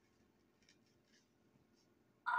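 Very faint scratching strokes of a knife slicing a strawberry on a wooden cutting board, about six soft strokes spread over two seconds.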